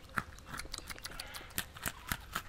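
Nibbling sound effect of small animals chewing: a run of quick, irregular crunchy bites.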